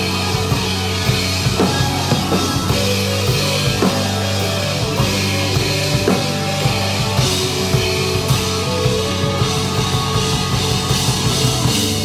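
A live rock band playing: a drum kit with cymbals keeps a busy, steady beat under electric guitar, bass and violin.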